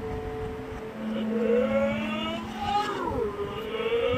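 A clarinet holding slow, sustained notes, played backwards through a TV speaker. From about a second in, a backwards voice with sliding pitch overlaps it.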